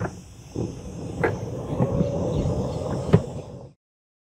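Golf cart setting off along a paved path: a low rumble with a couple of sharp clunks and a faint steady whine. The sound cuts off suddenly just before the end.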